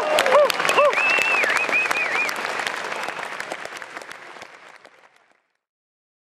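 Audience applauding and cheering at the end of a Dixieland jazz tune, with a few rising-and-falling whoops in the first two seconds; the applause dies away about five seconds in.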